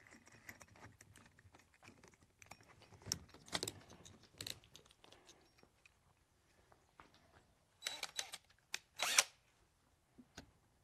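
Scattered clicks and short rattles of a cordless drill's chuck and drill bits being handled while the bit is changed, with the loudest rattles near the end.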